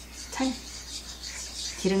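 Wooden spoon stirring oil around a nonstick frying pan, a soft continuous scraping and rubbing on the pan surface. A brief voice sound comes about half a second in, and speech starts near the end.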